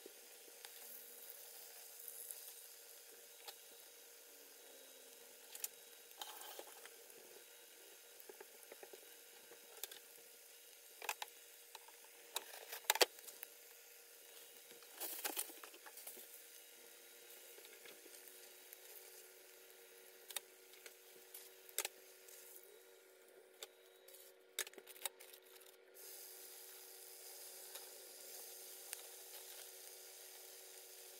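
Breaded salmon croquettes shallow-frying in hot oil in a skillet: a faint, steady sizzle dotted with scattered pops and crackles, a few louder ones about 13 and 15 seconds in. A faint steady hum runs underneath.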